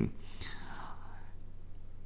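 Pause in talk filled by a soft intake of breath in the first second and a half, over a low, steady electrical hum.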